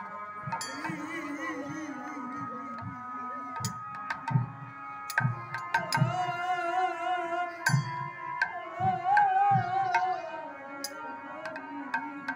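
Bengali devotional kirtan music: a harmonium holding steady chords under a wavering sung melody that rises higher about halfway through, with hand-played barrel drum strokes at an irregular beat.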